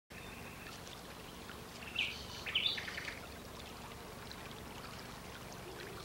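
Steady trickle and flow of a shallow stream, with a few short bird chirps about two to three seconds in.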